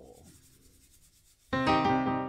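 A band starts its song: after a moment of near silence, a sustained keyboard chord comes in about one and a half seconds in.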